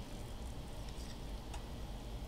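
A few faint clicks of spoons as a dollop of sour cream is scraped from one spoon with another onto a salad in a ceramic ramekin, over a low steady hum.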